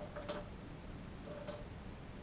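Pen drawing a long stroke on paper, with a few light ticks about a quarter of a second in and again about a second and a half in.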